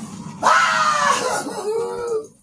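A man yelling: two drawn-out cries, the first high and falling in pitch, starting suddenly about half a second in, the second lower and shorter near the end.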